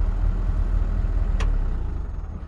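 Vehicle engine idling: a steady low rumble that fades away near the end, with a single sharp click about one and a half seconds in.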